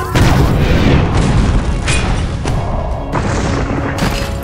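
Sound-effect cannon blast: a deep boom starts suddenly and rumbles on, with further sharp hits about two and three seconds in, over background music.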